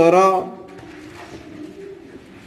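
A man's voice holding a drawn-out word for about half a second, then low room sound.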